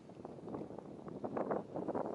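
Spinning reel being cranked to retrieve line: a fast, dense rattle of fine clicks that grows louder toward the end.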